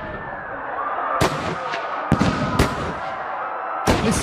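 Gunshots: four sharp pistol-type shots at irregular intervals, each trailing off in an echo.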